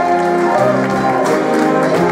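Jazz big band playing: saxophones, trumpets and trombones sounding held chords over piano, guitar, bass and drums, the chord changing about half a second in.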